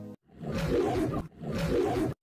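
Two loud animal roars, like a big cat's, each about a second long, one straight after the other.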